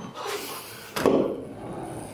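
A single sharp clunk of a door about a second in, over low background noise.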